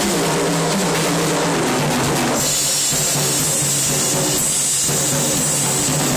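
Ludwig drum kit played in a continuous groove, with kick, snare and a steady wash of cymbals. Changing pitched notes run underneath it, as of backing music.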